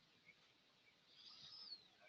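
Near silence on the call line, with a faint high chirp that rises and then falls in pitch near the end.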